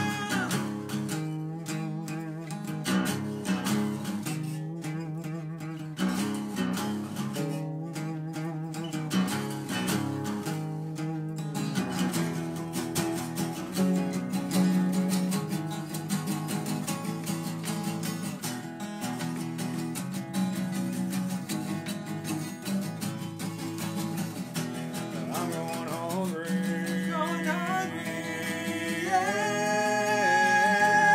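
Two acoustic guitars strumming chords together in a steady pattern, with a sung vocal line coming back in near the end.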